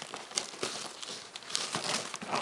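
Gift packaging crinkling and rustling as a small child handles it, with irregular sharp crackles.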